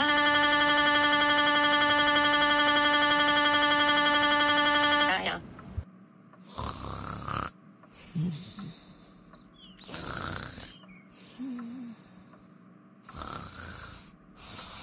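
A computer-synthesized voice holding one long, flat "aaaa" wail for about five seconds, cutting off abruptly. It is followed by cartoon snoring, one breathy snore about every three seconds.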